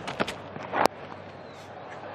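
Cricket bat striking the ball: one sharp, loud crack a little under a second in, well timed, over a steady low stadium crowd noise, with a few faint knocks just before it.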